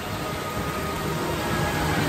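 Steady wash of water noise from freestyle swimmers splashing in an indoor pool, with no distinct events standing out.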